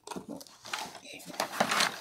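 A small drawer in a paper-covered storage unit being pulled open by hand, a noisy sliding and rustling that grows louder in the second half.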